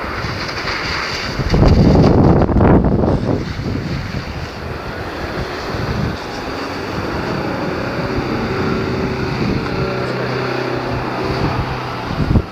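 Wind buffeting the microphone over surf, with a loud rush about two seconds in, while a Toyota Innova drives through shallow water on wet sand; its engine's steady hum comes through in the second half.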